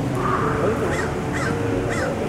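A bird calling outdoors in a string of short, repeated calls.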